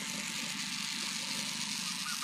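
Small DC toy motor of a homemade matchbox car running steadily, a continuous high whir as it drives its wheels over dirt.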